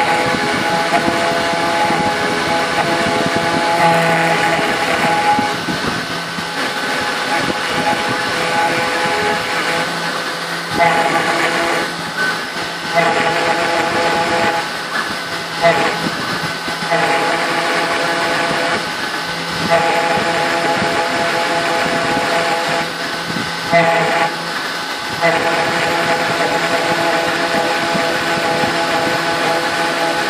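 3040T CNC router engraving aluminium with a 90° engraving bit, its spindle running at about 10,000 rpm. It makes a steady whine with several held tones, which drop out and come back every few seconds as the head moves along the pattern.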